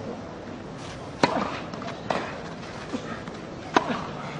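Tennis ball struck by rackets and bouncing on the court during a rally: four sharp pops a little under a second apart, the first and last the loudest.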